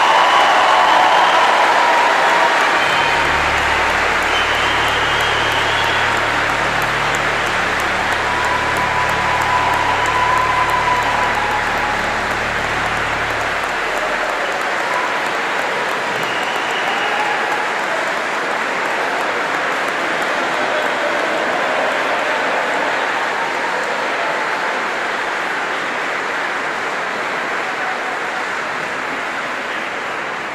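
Large crowd applauding and cheering, with whoops and shouts over dense clapping that rings in a reverberant stone church. A low steady hum runs underneath from about three seconds in to about fourteen.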